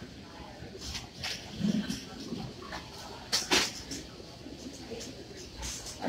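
Background hubbub at an airport security checkpoint: faint distant voices and a few sharp clacks, the loudest about three and a half seconds in.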